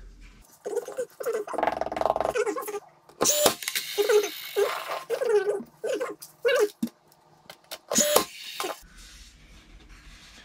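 Wooden cabinet pieces being handled and fitted: a run of short squeaks and creaks from wood rubbing on wood, with a few sharp knocks.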